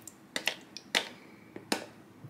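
Metal spoon clicking and scraping against the inside of a plastic yogurt tub as thick yogurt is scooped out, in four sharp, short strokes.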